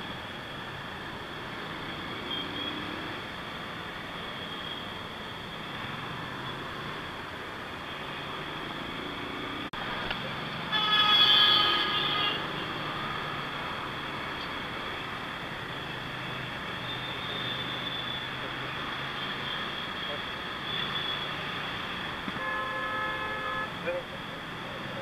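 Motorcycle riding in city traffic, with steady engine, tyre and wind noise. A loud vehicle horn sounds for about a second and a half about halfway through, and another horn sounds more briefly near the end.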